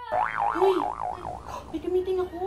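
A comic 'boing'-style sound effect: a warbling tone that swings rapidly up and down in pitch for over a second, followed by a few short sliding tones.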